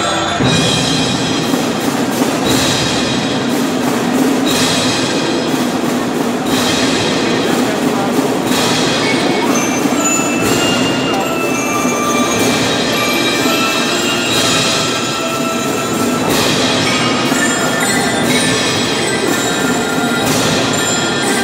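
Youth percussion ensemble playing: marimba and other mallet keyboard instruments ringing sustained notes over drums, with a strong struck accent about every two seconds.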